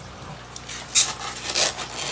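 Rustling and crinkling of packing material being pushed into a cardboard shipping box, a run of short scraping rustles with the loudest about a second in.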